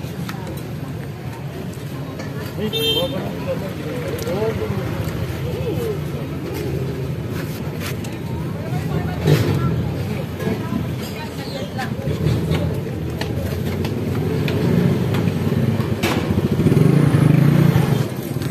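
Roadside street ambience: indistinct voices talking with motor traffic going by, growing louder near the end, and a few sharp clicks.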